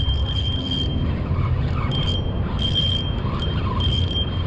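Steady rumble of road traffic passing on a busy avenue, with a thin high whine that breaks off and returns several times.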